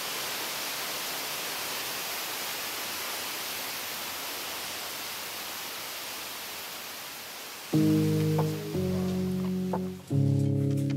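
Steady rushing water of a waterfall and rocky stream. Near the end, background music with held chords starts suddenly and is louder than the water.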